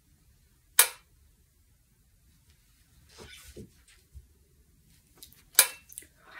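Two sharp clicks, about a second in and again near the end, with faint small handling noises between, as a C-melody saxophone is handled and raised to the mouth to play.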